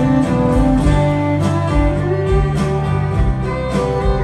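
Live rock band playing an instrumental passage: strummed acoustic guitar, electric bass and a steady drumbeat, with a fiddle playing over them.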